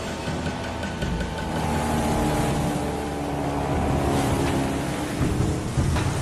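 Steady roar of a motorboat running fast over open sea: engine, wind and water noise together, with a few held musical notes sounding over it through the middle.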